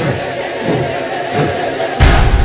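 Stage soundscape of low, repeated vocal calls from a group of performers over a sustained hazy drone.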